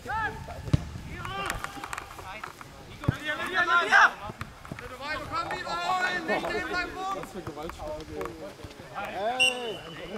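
Voices shouting across a football pitch during play: raised calls from players and spectators come one after another, the loudest about four seconds in and near the end, with a couple of sharp thuds of the ball being kicked.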